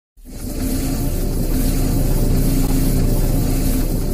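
Cinematic logo-intro sound effect: a low, steady drone with a hiss over it, swelling in within the first half-second and holding.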